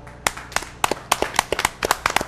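A few people clapping their hands together, quick and uneven, starting about a quarter second in.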